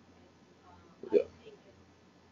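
One short, loud vocal sound from a person about a second in, over faint, distant talk.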